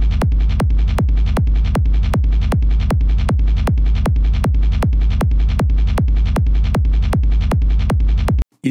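Hardstyle gated kick drum looping on every beat, about two and a half hits a second: each hit a sharp click with a falling pitch sweep into a distorted, rumbling low-end tail, played through bx_masterdesk Classic compression that costs it a little of its snappiness.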